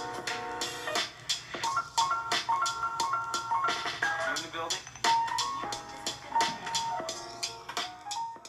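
Electronic music with a bright synth melody of short repeated notes over a regular drum beat, getting quieter near the end.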